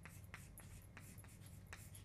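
Chalk writing on a chalkboard: faint, irregular taps and scratches as the letters are formed, over a steady low electrical hum.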